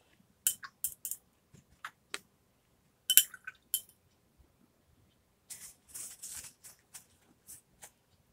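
Paintbrush knocking and clinking against a glass jar of rinse water while it is washed, in a few quick clusters of ringing clinks. These are followed by a short stretch of softer rustling and scuffing.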